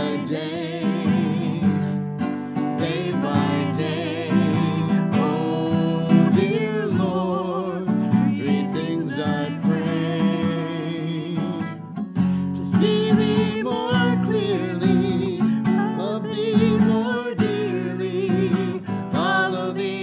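Acoustic guitar playing a song, with singing in a wavering vibrato over it.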